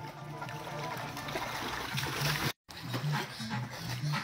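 Water splashing in a swimming pool as a swimmer strokes through it, growing louder over about two seconds and then cutting off suddenly, over background music with a steady bass line.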